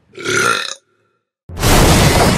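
A short, throaty croak from the possessed woman, then a moment of dead silence, then a sudden loud boom near the end that carries on into a loud horror score.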